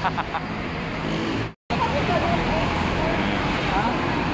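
Steady road-traffic rumble with faint voices in the background. It drops out to silence for a moment about a second and a half in, then carries on.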